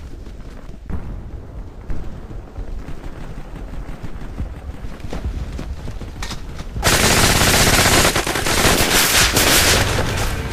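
Battle sound effects of gunfire. A low rumble with scattered shots is followed, about seven seconds in, by a sudden loud, dense burst of machine-gun fire.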